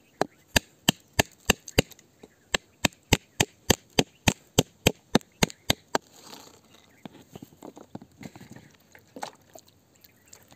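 A pointed metal tool striking the rock around an embedded crystal in a quick, even run of sharp taps, about three a second, chipping it free. The taps stop about six seconds in and give way to quieter scraping and scattered light knocks, one louder near the end.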